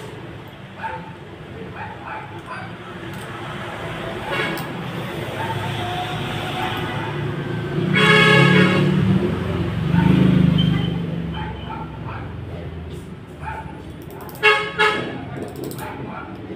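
Street traffic: a vehicle horn toots for about a second, over the low rumble of a passing engine. Two more short, loud tonal bursts come near the end.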